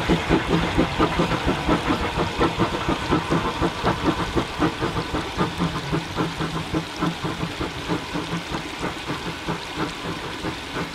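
Industrial saddle-tank steam locomotive working a train, its exhaust beating in a fast, even rhythm that slowly fades as it draws away.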